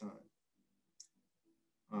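A pause in a man's speech, with one short, faint click about a second in.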